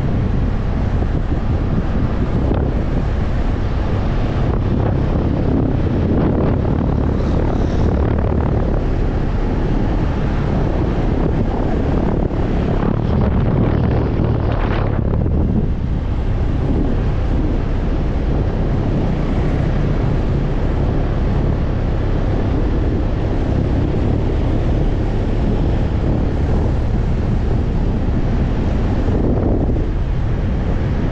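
Motorcycle riding at road speed: steady wind noise on the rider's camera microphone over the engine running underneath.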